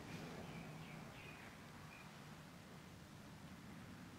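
Near silence: room tone with a faint low hum and a few faint, short, high chirps.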